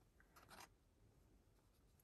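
Near silence, with a faint, brief rustle of paper card stock being handled about half a second in.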